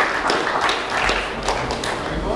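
An audience's applause tapering off into scattered individual claps.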